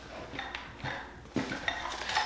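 Several light wooden knocks and clatter as a homemade craft xylophone and its wooden mallets are picked up and handled, the loudest knock a little past halfway.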